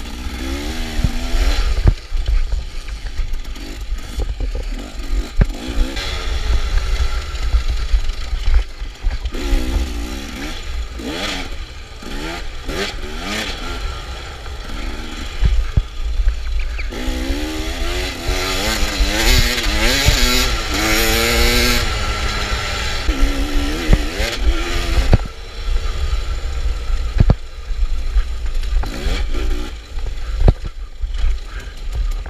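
KTM dirt bike engine revving hard and easing off again and again, its pitch sweeping up and down with each burst of throttle. There is a longer run of high revs a little past the middle. Under it runs a steady low rumble, with scattered knocks from the bike over rough ground.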